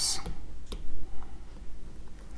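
Plastic stylus tip tapping on a tablet's glass screen: a few short, light clicks spread across two seconds.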